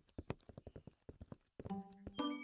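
A rapid run of light clicks, several a second, like cartoon clip-clop or tapping percussion. Soft background music with sustained notes comes in near the end.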